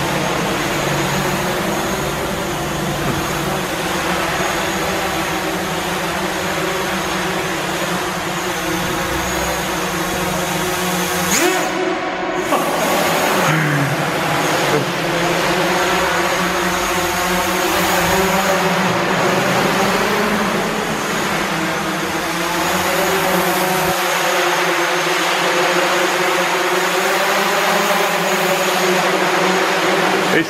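Multirotor drone (a DJI Mavic Pro airframe rebuilt as an acro FPV quadcopter) flying, its motors and propellers giving a steady buzzing whine whose pitch wavers with throttle, with a few quick rises and falls near the middle.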